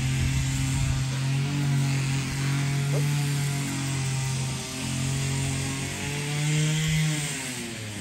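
A motor running steadily, its pitch rising a little and then dropping back near the end.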